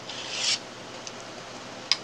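A brief rubbing hiss in the first half-second, then a low steady background and a single click near the end.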